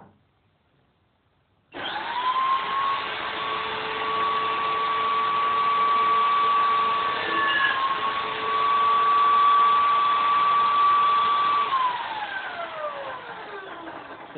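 Electric drill clamped in a homemade wooden lever drill press starting up about two seconds in with a rising whine, then running at a steady high-pitched whine while the bit is levered down into a piece of wood, with a brief dip in pitch about halfway. Near the end it is switched off and winds down with a falling whine.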